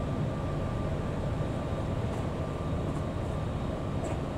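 Coach bus running while parked, heard from inside the cabin: a steady low rumble with a faint, steady high tone above it.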